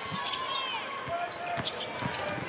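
Basketball dribbled on a hardwood court, a few low bounces about two-thirds of a second apart, under arena crowd noise and voices.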